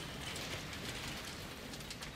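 Underwater ambience: a steady crackling hiss that fades out just after the end.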